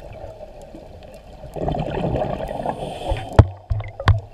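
Underwater recording of a scuba diver's exhaled bubbles rumbling and gurgling from the regulator for about a second and a half, starting about halfway through. A single sharp knock follows near the end.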